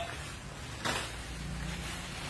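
A single sharp knock about a second in, then a low steady hum that starts just after it.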